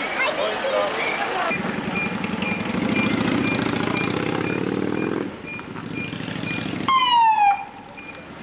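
A heavy vehicle engine running for a few seconds, then a fire engine siren giving one short whoop that falls in pitch near the end. A faint high beep repeats a few times a second throughout.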